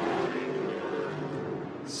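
A pack of stock race cars accelerating hard from a rolling start, their engines running together at high revs in a steady drone that eases off slightly toward the end.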